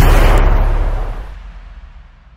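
A trailer-style impact sound effect: a sudden noisy boom as the beat cuts off, its rumbling tail fading away over about two seconds.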